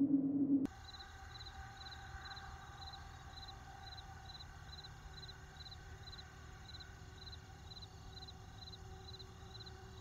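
Faint outdoor ambience with an insect chirping steadily, a little over two chirps a second, over a few faint held tones. A low held tone from the music cuts off suddenly under a second in.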